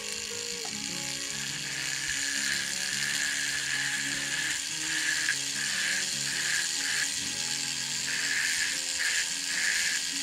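High-speed rotary carving tool with a small diamond bit grinding splits into the edge of a wooden fish fin, its whine steady at first, then coming and going in short strokes as the bit is touched to the wood and lifted, from about halfway through.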